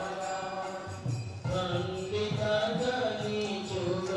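Devotional chant sung in a held, melodic line, with a short break about a second in.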